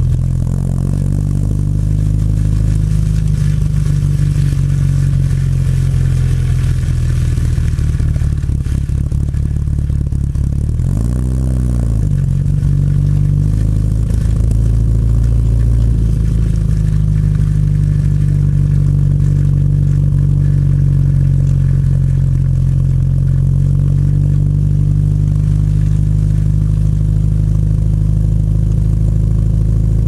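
The 1959 Triumph TR3A's four-cylinder engine running at low revs as the car is driven slowly, with one quick rev up and back down about eleven seconds in.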